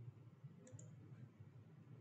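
Near silence with a faint computer mouse double-click, two quick clicks, about two-thirds of a second in.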